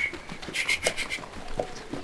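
Light scuffing and rustling of movement, with a few short clicks about half a second in.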